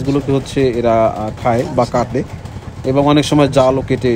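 A man talking in Bengali, with no other sound standing out.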